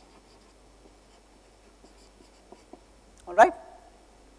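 Felt-tip marker writing on paper, faint scratching strokes with a couple of light taps, followed near the end by a man's brief 'All right.'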